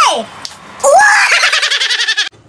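A man's loud, rough scream: a short falling exclamation at the start, then about a second in a yell that rises and is held.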